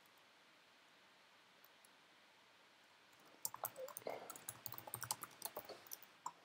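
Near silence, then from about halfway through a quick, irregular run of computer keyboard keystrokes as a line of code is typed.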